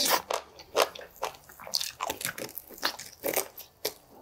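Biting and chewing oven-roasted chicken wing, a dense run of irregular crunches.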